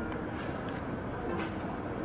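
Steady low rumble of outdoor street background, like traffic, with a faint voice briefly in the second half.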